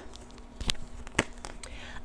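Tarot cards being handled and a card drawn from the deck: faint rustling with two light, sharp taps about half a second apart.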